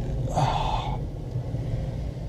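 Low, steady engine and road rumble inside a car driving slowly, with a breathy gasped "oh" about half a second in.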